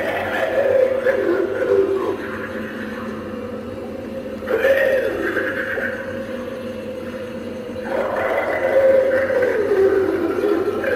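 Spirit Halloween Bog Zombie animatronic playing its recorded zombie growls and moans through its built-in speaker: one call at the start, another about four and a half seconds in, and a third near the end, over a steady hum.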